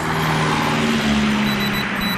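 Cartoon sound effect of a small propeller airplane engine droning steadily. High, short beeps start repeating rapidly about one and a half seconds in.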